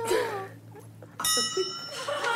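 A bright bell-like chime rings out suddenly about a second in, several clear tones held steady. Just before it, a voice trails off, falling in pitch.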